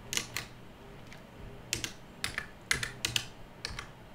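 Typing on a computer keyboard: sharp keystrokes coming in uneven little runs with short pauses between them.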